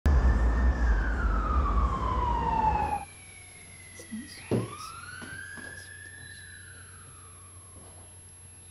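Emergency vehicle siren wailing loudly over a low rumble, its pitch sweeping down, then cutting off suddenly about three seconds in. About halfway through there is a thump, and a fainter siren wail rises and slowly falls.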